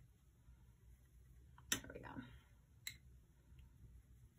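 Paintbrush rinsed in a glass water jar, its handle clicking sharply against the jar twice, a little over a second apart, over near silence.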